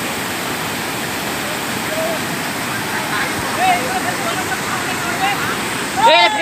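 Floodwater rushing steadily through the arches of a broken bridge, a loud, even roar of water. From about two seconds in, people's voices are heard faintly over it.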